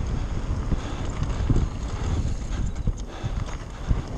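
Mountain bike riding fast down a dirt trail: steady tyre and trail rumble with irregular knocks and rattles as the bike goes over bumps.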